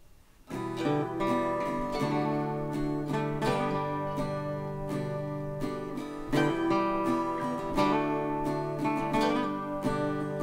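Acoustic guitar playing a chord intro, starting about half a second in with regular strokes.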